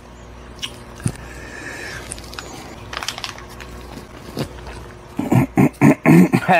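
Foil snack pouch crinkling and rustling as it is handled and opened, with a run of louder crackles near the end.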